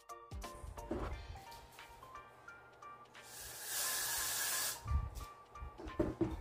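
A single burst of aerosol hair spray, a bright hiss lasting about a second and a half midway through, over background music. A couple of soft knocks follow near the end.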